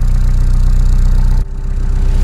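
Animated-cartoon sound effect of a delivery van's engine running, cutting in suddenly at full level, with a brief drop about one and a half seconds in.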